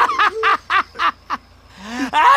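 A woman laughing hard in a quick run of short ha-ha bursts, about six of them, that die away about one and a half seconds in.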